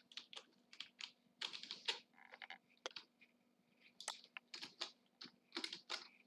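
Faint, irregular keystrokes on a computer keyboard, coming in short clusters of clicks.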